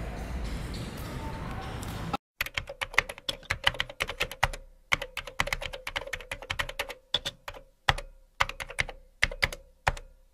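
Computer keyboard typing: a quick, irregular run of key clicks with short pauses, starting about two seconds in after a stretch of room tone.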